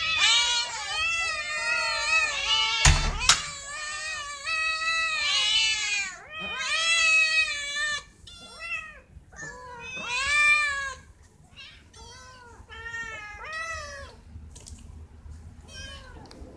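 A group of cats and kittens meowing at once, many overlapping high meows. The calls are dense for the first half, thin out to scattered meows, and mostly stop near the end. A single sharp thump comes about three seconds in.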